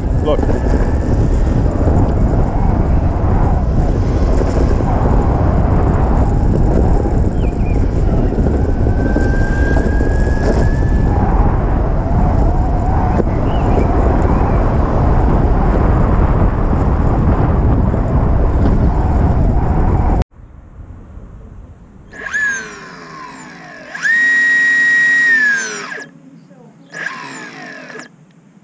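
Heavy wind noise on the microphone with tyre rumble from a six-wheel electric skateboard riding fast on tarmac. About 20 seconds in it cuts off suddenly, and a quieter electric motor whine follows that rises, holds steady for about two seconds and falls.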